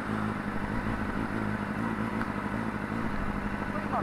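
Honda CBR600RR's inline-four engine idling steadily, with an even low hum.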